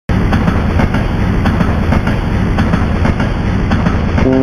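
Train running on rails, with a rapid, even clatter of about four knocks a second over a steady rumble.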